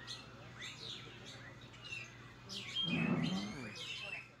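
Birds chirping: a series of short, quick rising calls, with a louder, lower-pitched call about three seconds in.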